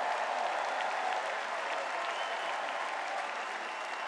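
Large convention-hall crowd applauding steadily, tapering slightly near the end.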